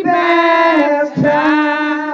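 A woman singing loud, long held notes of a church song in two phrases, with a short break and an upward slide into the second phrase about a second in.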